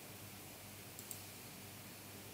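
A computer mouse button clicked once about a second in, heard as two quick ticks, press then release. Under it runs a faint steady hiss of background noise.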